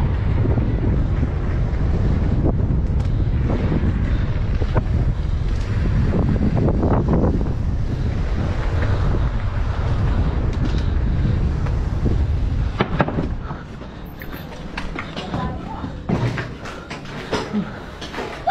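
Wind buffeting the microphone of a rider moving fast on a bicycle. It drops away sharply about thirteen to fourteen seconds in as the ride slows, leaving a few scattered clicks and knocks.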